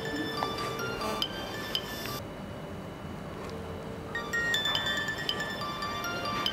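Background drama music of short, bright, bell-like ringing notes over a soft bed. The high notes drop away about two seconds in and come back about four seconds in.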